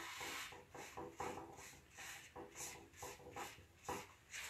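Gloved hand scrubbing a stripped wooden tabletop with a pad wet with mineral spirits, cleaning off paint-stripper residue. It comes as faint, quick back-and-forth rubbing strokes, about two or three a second.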